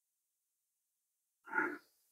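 A man's brief grunt near the end.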